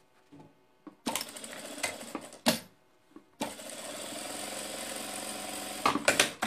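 Fabric being shifted and handled, with a sharp click about two and a half seconds in. Then a sewing machine runs at a steady speed for about two and a half seconds, stitching a seam.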